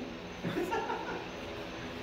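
A man chuckling briefly, then a low steady hum.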